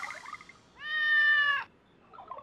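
A cat meowing once: a single drawn-out meow starting about a second in and lasting under a second, with the tail of an earlier meow fading away at the start. In the cartoon it is heard where a trumpet was expected: the wrong sound.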